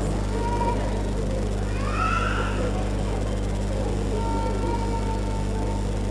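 A steady electrical hum from a public-address sound system runs under a low murmur. About two seconds in there is one short, high squeal that rises and then falls.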